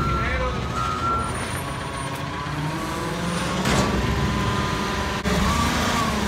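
Front-loader garbage truck's diesel engine running as it manoeuvres close up, with a short hiss of air about three and a half seconds in.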